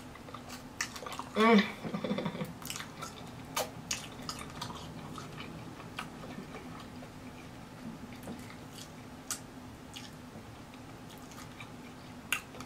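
Close-miked eating of a Hot Cheetos-crusted fried turkey leg covered in melted cheese: biting and chewing, with wet mouth noises and sharp little crackles scattered throughout. There is a short hummed vocal sound about a second and a half in.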